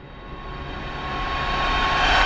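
Whoosh sound effect for an animated logo intro: a swelling rush of noise with a low rumble and a thin steady tone, growing louder throughout.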